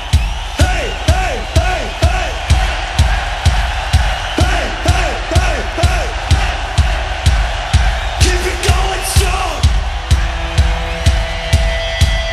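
Live heavy metal concert: a steady bass-drum beat about twice a second, with the crowd shouting and whooping along between the beats. Near the end, sustained held notes come in over the beat as the song's intro begins.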